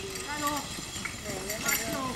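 Hoofbeats of a team of four horses drawing a carriage past over grass, with spectators' voices talking over them.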